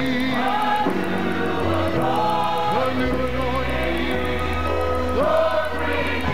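Gospel music: a choir singing held notes that slide between pitches over a sustained bass line, which shifts to a deeper note about halfway through.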